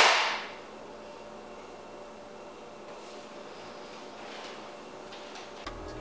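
A single sharp knock with a short ringing tail as a metal scooter deck is set down on a wooden table, followed by quiet room tone.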